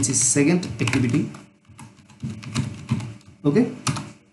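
Typing on a computer keyboard: a short run of keystrokes, heard mainly in the second half after a voice in the first second or so.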